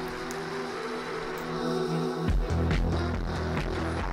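Electronic music track played through a cassette-tape emulation plugin on a heavily crushed, distorted preset: held synth chords, then a pulsing bass comes in a little past two seconds in.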